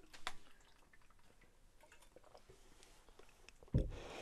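A person quietly sipping water from a cup: faint mouth and cup clicks, then a dull thump near the end.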